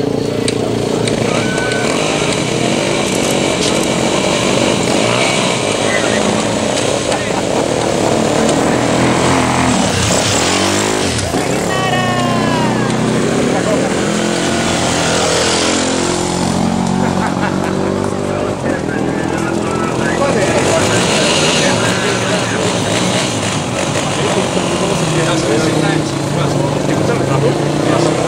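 Enduro motorcycle engines running at idle and being revved, their pitch rising and falling about ten seconds in, under the chatter of a crowd.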